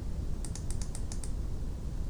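A quick run of about ten light clicks from the computer's controls in under a second, as the on-screen document is scrolled down, over a low steady room hum.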